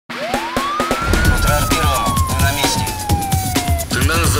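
A siren sound effect in a news-show opening theme: one wail that rises steeply for about a second, then falls slowly until it stops just before the end. It sits over dramatic music with a quick percussive beat and low hits.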